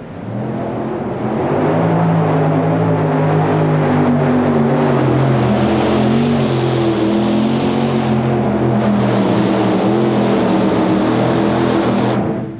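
Five-engine modified pulling tractor at full power, dragging a weighted sled through dirt. Several big engines run together at high revs: the sound builds over about the first second and a half, then holds loud and steady with a slightly wavering pitch. One of the five engines is giving trouble on this pull.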